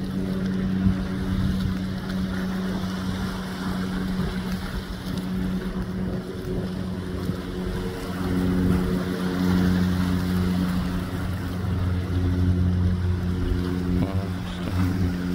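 Steady motorboat engine drone, growing slightly louder about two-thirds of the way through, over a wash of wind and open water.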